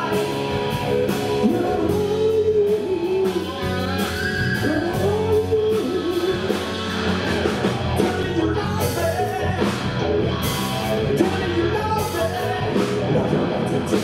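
A rock band playing live at full volume, with electric guitar, electric bass, drum kit and keyboards.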